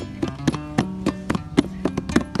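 Acoustic guitar strummed in a steady rhythm, about four strokes a second, under sustained chords.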